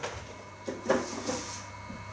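Picture frame being handled on a wall: a couple of light knocks a little before a second in, over quiet room tone.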